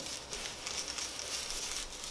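Stencil brush rubbing paint through a stencil sheet onto a rough textured wall: a faint, steady scratchy brushing.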